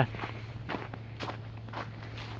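Footsteps walking over leaf-strewn ground, about two steps a second, over a low steady hum.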